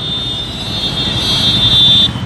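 Road traffic with motorcycles running, under a steady shrill high-pitched tone that cuts off suddenly at the end.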